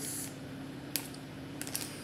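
Light handling noise: a few small clicks, the sharpest about a second in and a quick cluster near the end, over a faint steady hum.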